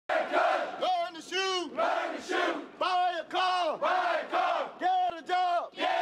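A platoon of Army recruits and their drill sergeant shouting a rhythmic call-and-response drill chant. Each line is short and loud, about two to a second; a single male voice calls and the group shouts back in unison.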